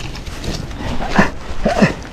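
A crashed mountain biker's short vocal groans, three of them: one just past the middle and two close together near the end, over rustling noise as he lies tangled with his bike.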